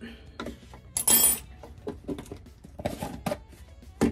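A jar of coconut oil being handled as oil is scooped out: light knocks and clinks, with a short loud scraping rustle about a second in and a few more knocks near the end.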